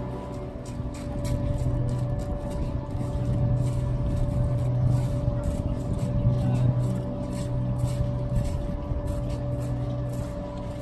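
Electric air blowers running to keep large inflatable spheres inflated: a steady hum with one constant mid-pitched tone over a low rumble.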